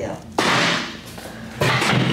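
A sudden thud about half a second in as a chiropractic thrust is pushed into the hip of a person lying on a chiropractic table, trailing off as a short rush of noise.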